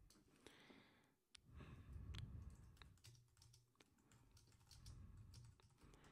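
Faint computer keyboard typing: a scattered run of light key clicks over low background noise.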